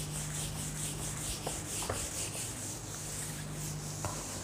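Whiteboard duster wiped back and forth across a whiteboard, a steady rubbing hiss as the marker writing is cleaned off.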